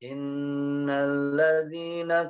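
A man reciting the Qur'an in a chanted melody. He holds one long steady note, then steps up in pitch about one and a half seconds in with shorter syllables. It is an example of reciting a long verse without joining melodic phrases, so the tune strays.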